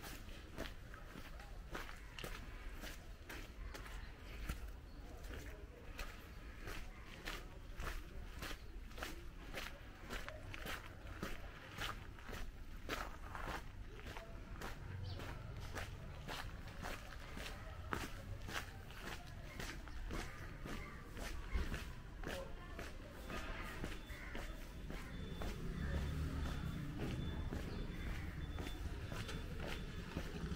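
Footsteps of a person walking along a concrete and gravel lane, about two steps a second. A low rumble builds near the end.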